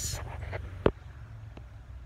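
Low rumble of a phone microphone being handled as the phone is turned around, with one sharp click a little under a second in and a fainter tick later.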